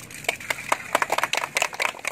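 A small group of people clapping, scattered uneven hand claps that begin a moment in.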